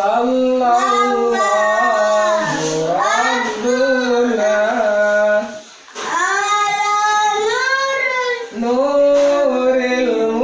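Sholawat, an Islamic devotional song, sung unaccompanied by a boy and a young man together, in long drawn-out phrases with bending held notes. The singing breaks off briefly twice, just past halfway and again near the end.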